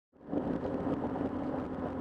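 Steady road and engine noise inside a moving car's cabin, fading in at the very start.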